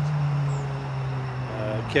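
Steady low hum of road traffic, a vehicle engine droning, with a man's voice starting again near the end.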